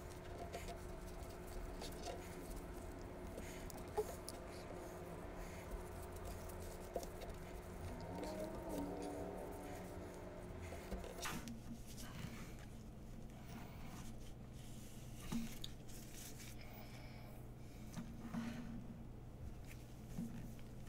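Faint rubbing and rustling of a damp alcohol wipe being worked over a phone's glass screen by hand, with small ticks and scratches. A steady faint background hum runs underneath, and a click about halfway through changes it.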